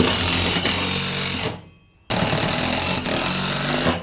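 Cordless power driver running a self-tapping screw through the galvanized steel E-track rail into a wall stud, loud, in two runs of about a second and a half each with a short pause between.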